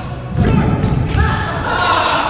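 Background music with a steady beat and vocals.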